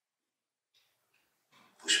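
Near silence for about a second and a half, then near the end a man's breathy intake and voice as his speech resumes.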